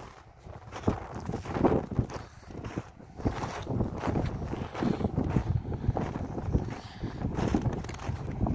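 Wind buffeting a phone's microphone in uneven low rumbles that swell and drop.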